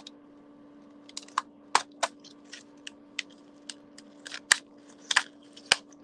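Clear plastic wrap on a small cardboard box being picked at and torn open with pliers: an irregular run of sharp crackles and clicks, loudest in the last two seconds.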